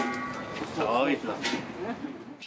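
A person's voice, a short phrase about a second in, over background music.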